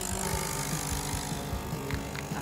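Nespresso capsule coffee machine's pump running steadily as it brews a shot of espresso into a glass cup.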